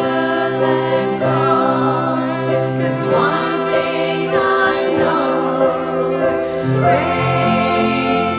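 A small mixed group of voices singing a hymn together, with a saxophone playing along and a low line of held notes underneath.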